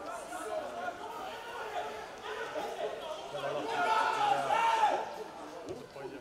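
Indistinct shouts and calls from players and coaches on the pitch during play, several voices overlapping, loudest a little past the middle.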